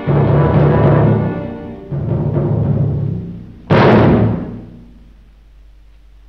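Orchestral title music ending on three loud chords with timpani. The last, about four seconds in, has a crash that dies away into faint soundtrack hiss.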